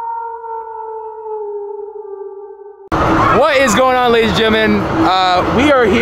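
The tail of a long howl sound effect, holding one note and slowly sinking in pitch as it fades. About three seconds in it cuts off sharply to loud voices.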